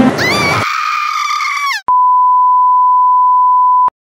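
A high, wavering electronic tone that rises, holds and drops off, followed by one steady electronic beep about two seconds long that starts and stops abruptly with a click.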